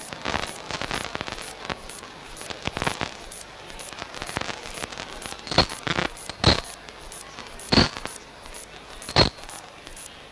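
Irregular crackling throughout, with four loud, sharp pops in the second half.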